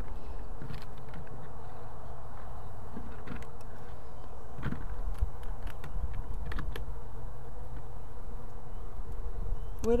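Honey bees buzzing steadily around an open frame of brood comb, with a few faint light clicks scattered through.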